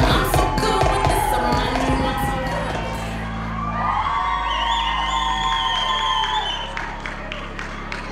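Recorded hip-hop routine music playing loud over a hall sound system, its heavy beat breaking off about four seconds in, with the audience cheering and whooping over it.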